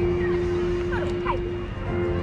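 Music played over an outdoor stage sound system, holding one long steady note. Around the middle there are a few short high-pitched cries that slide up and down in pitch.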